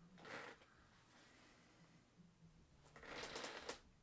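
Near silence: room tone with two faint, brief rustling noises, one just after the start and a longer one about three seconds in.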